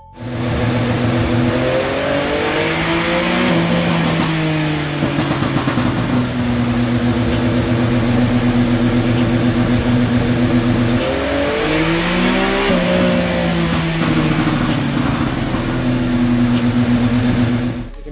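Yamaha MT-09 three-cylinder engine running hard on a dyno. It rises in pitch and then holds a steady pitch. About eleven seconds in it rises again and settles steady once more, as if held at a fixed road speed by a pit speed limiter.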